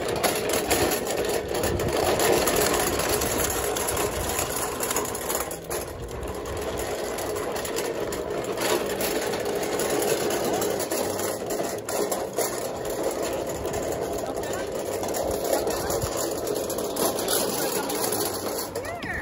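Small wagon's wheels rolling over brick pavers and concrete sidewalk as it is pulled along by its handle, a continuous, fairly loud rolling noise.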